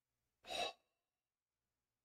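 A single short, sharp breath from a man, audible as one brief breathy huff about half a second in.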